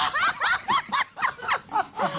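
A man and a woman laughing hard together, in rapid repeated pulses of about four or five a second.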